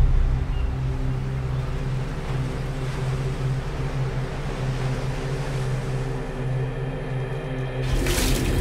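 A low, steady drone of several held tones under an even wash of noise like surf, as trailer sound design.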